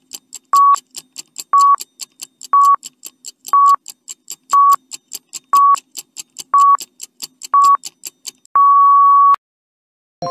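Countdown timer sound effect: fast ticking, about four ticks a second, with a short high beep on each second, ending in one long beep near the end.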